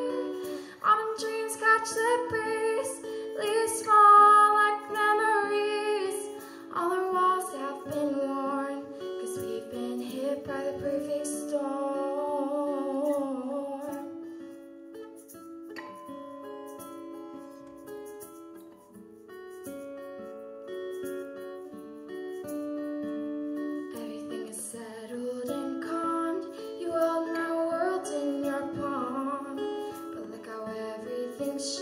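Acoustic guitar accompanying a girl's singing voice, with a quieter stretch of guitar alone in the middle.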